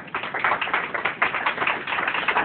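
Audience applauding: many hands clapping at once, starting just after the beginning.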